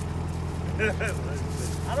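Vehicle engine idling steadily, a low even hum that stays constant throughout.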